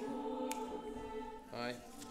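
Women's voices of a choir holding a sustained chord that fades over about a second and a half, followed by a short voice near the end.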